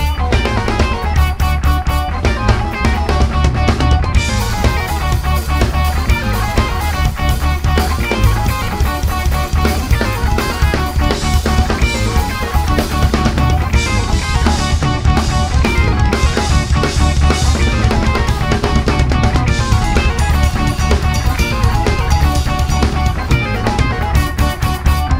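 Live four-piece band of keyboards, electric guitar, bass and drum kit playing loud, with a steady driving drum beat and heavy bass; cymbals brighten from about four seconds in.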